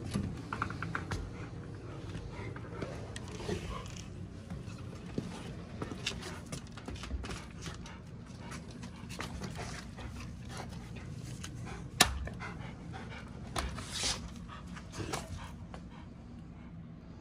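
Rottweilers panting as they sit and wait, with small scattered clicks and shuffles and one sharp click about three-quarters of the way through.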